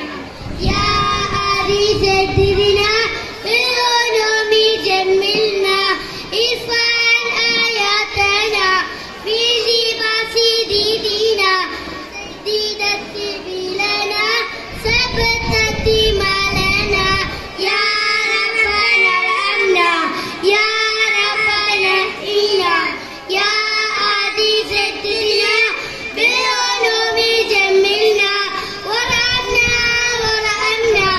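A small group of young children reciting a poem in unison in a sing-song chant, phrase after phrase with held notes.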